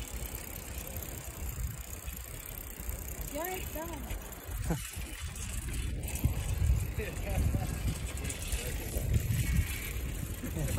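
Wind rumbling on a phone microphone carried on a moving bicycle, steady and low, growing stronger in the second half. Brief snatches of voices sound about a third of the way in and again later.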